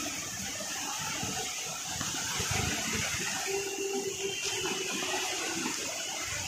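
Steady rain falling, a continuous even hiss.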